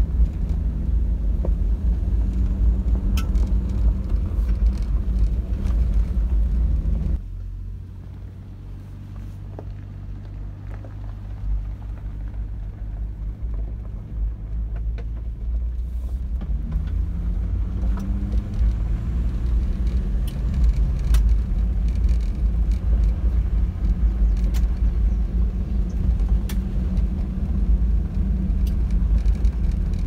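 Inside a vehicle's cabin, its engine and tyres rumble on a gravel road, with scattered small ticks of stones. About seven seconds in, the rumble drops suddenly to a quieter, steady engine hum. It builds back up in the second half, with the engine pitch rising as the vehicle picks up speed.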